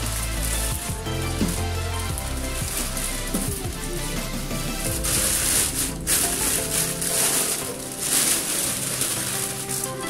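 Plastic bag wrapping crinkling and rustling as it is pulled off a speaker cabinet, loudest in the second half, over background music with a steady bass line.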